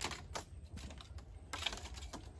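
Faint, irregular crackling and rustling of palm leaves being handled and stripped, a scatter of small dry clicks.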